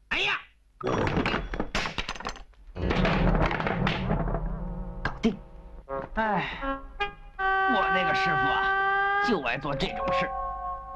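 Film soundtrack: a man's voice talking, with a quick series of sharp knocks and thuds about a second in, then a long steady held note near the end.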